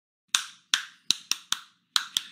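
One person clapping hands: about six sharp, single claps, unevenly spaced and coming closer together in the middle.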